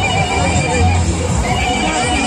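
A voice singing with a wavering, vibrato pitch over music, against a dense crowd rumble.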